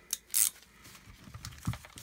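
A few light, irregular clicks of a 14 mm deep socket and its wrench on the brass valve fitting of a refrigerant gauge manifold as the assembly is snugged only lightly, then a soft thump near the end as the manifold is handled.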